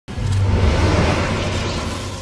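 Logo intro sound effect: a sudden, loud rush of noise over a deep rumble that sets in at once and begins to fade away in the second half.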